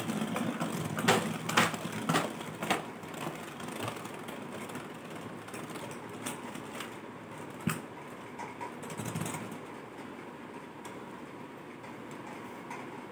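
Beyblade spinning top whirring on the plastic floor of a Beyblade Burst stadium. It knocks against the stadium several times in the first few seconds and once more near the middle, and the whir gets quieter as the top slows.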